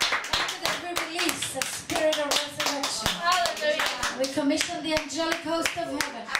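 Hands clapping in quick succession, with voices raised over the clapping.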